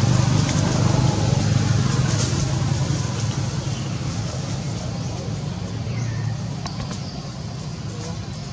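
A motor vehicle's engine giving a steady low hum that slowly fades away. A faint short falling chirp comes about six seconds in.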